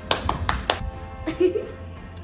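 A woman clapping her hands, about four quick claps in the first second, over background music.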